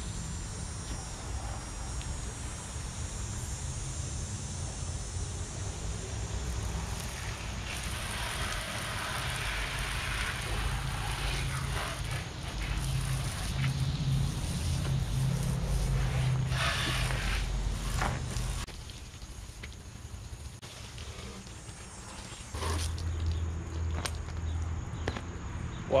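Garden hose spray nozzle jetting water onto a dirt bike, rinsing the wash off it. The spray hisses and spatters on the bike and the pavement from about 7 s in and cuts off just after 18 s, over a steady low rumble.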